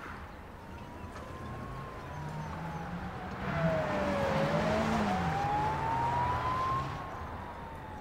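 A car siren wailing slowly up and down, about one rise and fall every five seconds, as a car drives past; its engine and tyre noise swells to its loudest in the middle and then fades.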